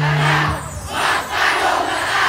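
Many performers shouting a group war cry in surges while the drums pause, over a low held note that stops just under a second in.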